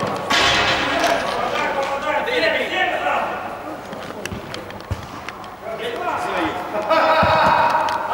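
Football players shouting to each other during play, loudest just after the start and again near the end. Scattered sharp knocks of the ball being kicked run between the shouts.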